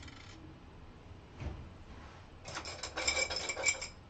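Painting supplies clattering and clinking on a table, metal and glass knocking together with a light ringing, for about a second and a half near the end after a single dull knock.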